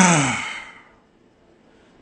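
A man's sigh: one breathy, voiced exhale that falls in pitch and fades out within about a second.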